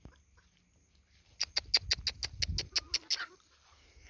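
A person calling chickens with a quick run of about a dozen kissing clicks, roughly seven a second, starting about a second and a half in.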